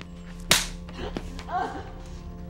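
A single sharp smack about half a second in, the loudest sound, followed by a brief vocal cry near the end, over a low sustained music drone.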